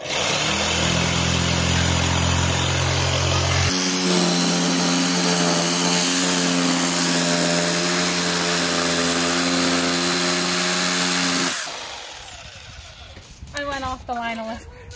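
Black+Decker CurveCut corded jigsaw cutting through an OSB board along a marked line. The motor's pitch steps up about four seconds in, and the saw stops a couple of seconds before the end.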